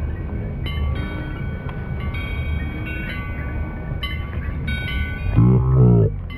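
Music with held high notes that start and stop over a dense low rumble. A wavering melodic line comes in near the end.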